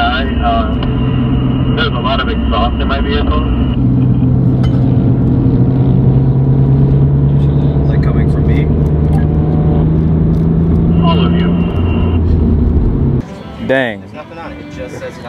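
Car engine and road noise from inside a moving car. The engine note climbs slowly and steadily for several seconds as the car gathers speed, with voices over it in the first few seconds. The drone cuts off abruptly near the end.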